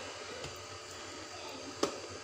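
Plastic food-container lid being handled: one sharp plastic click near the end, over faint room hiss.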